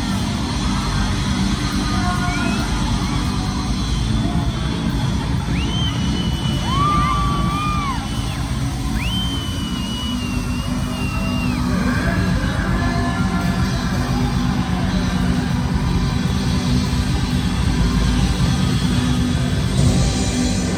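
Live pop band music over a concert sound system, recorded from the audience, with heavy bass throughout. A few long high held notes, from voices or whistles, ride over it in the middle.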